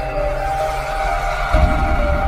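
Logo intro music: sustained synth tones over a low rumble, with a deep boom about one and a half seconds in.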